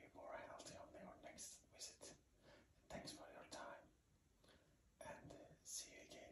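Soft whispering in short phrases with pauses between them.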